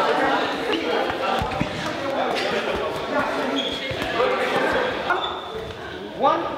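Many people talking at once in a large sports hall, a continuous chatter of voices with a few dull thuds.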